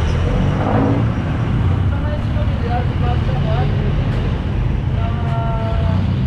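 Steady low rumble of street traffic with indistinct voices in the background, and a short held tone near the end.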